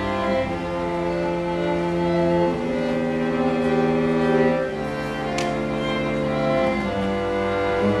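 A string quartet of two violins, viola and cello playing a slow passage of long bowed chords that change about every two seconds.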